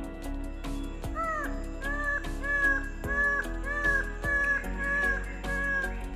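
Twelve-wired bird of paradise calling a run of about ten short, arched notes, about two a second, starting about a second in, over background guitar music.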